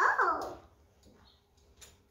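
A short high vocal sound at the start, falling in pitch over about half a second, then a quiet stretch with a couple of faint clicks.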